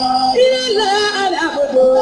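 Live singing over music: long held vocal notes joined by ornamented, bending slides, with one held note starting near the end.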